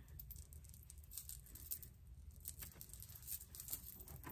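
Faint, irregular rustling and small ticks of hands working through a straight human-hair headband wig and its fabric headband on the head.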